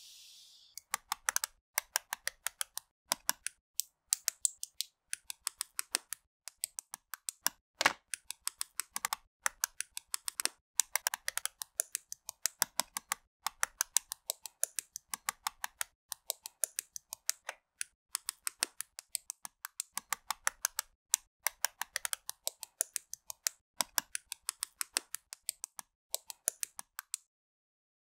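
LEGO plastic bricks being snapped together and handled, a rapid stream of sharp clicks in quick clusters of several a second.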